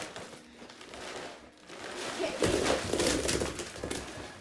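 A bag full of wrapped candy rustling and crinkling as it is picked up off the floor and lifted, growing louder and busier about halfway through.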